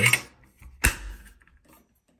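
Stainless steel grab bar flange cover scraping against its mounting plate as it is lined up, then one sharp metallic click a little under a second in as it snaps into place.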